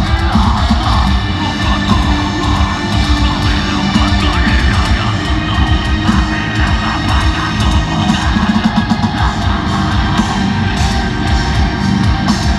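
Deathcore band playing live: heavily distorted guitars and bass over fast, dense drumming, with harsh screamed vocals.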